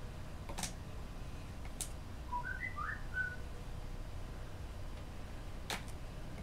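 A brief whistled phrase about two seconds in: five short notes that jump up and down in pitch. Around it, a few sharp clicks of a small hand tool working on a sculpted figure.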